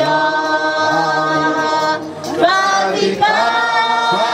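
A group of voices singing together unaccompanied, in long held notes, with a short break about two seconds in before the next phrase starts.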